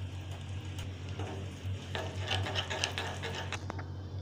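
Steel spoon stirring a cornflour-and-milk slurry in a glass bowl, with irregular light scrapes and clinks, over a steady low hum.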